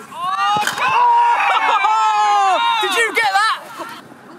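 Several high-pitched women's voices shouting and calling out at once during a football drill. The shouting goes on for about three and a half seconds and then breaks off.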